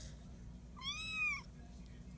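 A five-week-old Bengal kitten gives one short, high meow about a second in, rising then falling in pitch.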